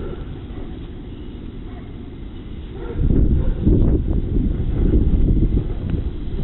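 Wind buffeting and clothing rubbing on a police body camera's microphone. A low, muffled rumble becomes louder and irregular about halfway through, as the wearer moves.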